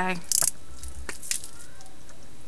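The last syllable of a woman's voice, then a brief rustle and a couple of faint clicks as a makeup tube is picked up and handled, over quiet room tone.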